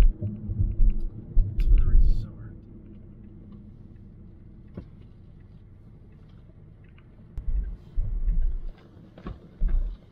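Low rumble inside a moving Tesla Model Y's cabin, coming in deep bursts near the start and again late, as the car rolls from the road into a gravel lot, with a quieter steady road noise between.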